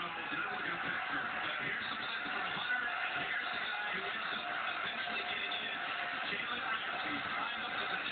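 Steady stadium crowd noise with music underneath, coming from a television's speaker during a college football broadcast.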